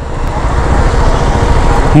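A motorcycle engine running at low speed in city traffic, with the rush of other vehicles passing close by.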